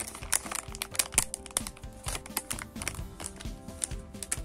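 Plastic lollipop wrapper crinkling and crackling in the hands, in quick irregular crackles, with background music.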